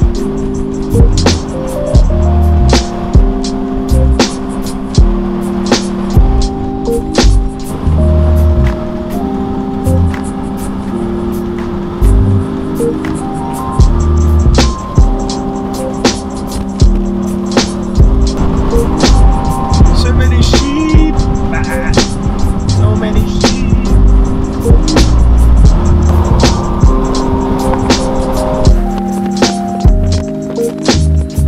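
Background music with a steady beat, held chords that change every second or two, and a bass line.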